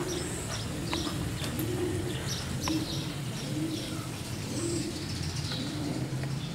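Pigeons cooing over and over in short low phrases, with small birds chirping high above them.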